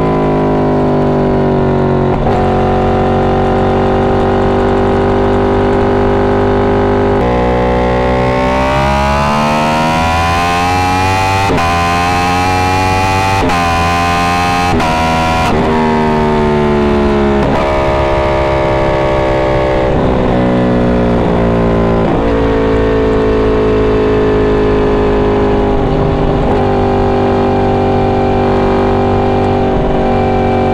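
Yamaha R1's inline-four engine under way, running steadily, then pulling hard with its pitch climbing and dropping back at each of three quick upshifts about a third of the way in, with a rush of wind at speed, before easing back to a steady cruise.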